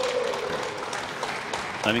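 Audience applauding a scored point in three-cushion billiards, under a commentator's drawn-out word at the start.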